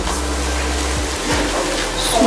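Steady hiss over a low rumble, with no distinct events; the low rumble drops away near the end.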